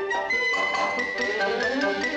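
Orchestral title music, several instruments holding and changing pitched notes together in a steady melody.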